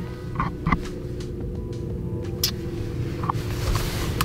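Steady low rumble and hum of a car ferry's engines, heard from inside a car on the vehicle deck, with a few faint clicks.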